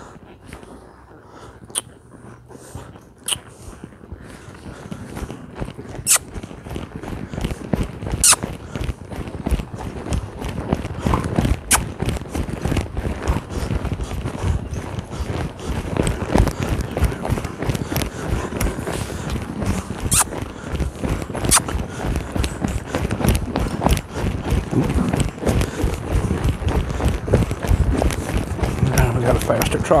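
A ridden horse's hoofbeats on arena sand at a trot, a rapid run of thuds that grows louder and busier from about four seconds in.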